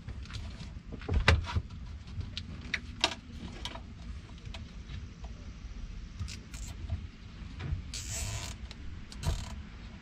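Handling noise of a zip tie being threaded around heavy battery cables: scattered clicks, taps and scraping of plastic and cable insulation, with a short rasp about eight seconds in.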